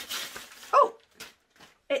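Wrapping paper tearing and crinkling as a present is unwrapped, then a dog gives a single short bark about three quarters of a second in.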